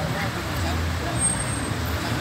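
Traffic on a busy city road: vehicle engines running with a steady low rumble, with faint voices of people in the background.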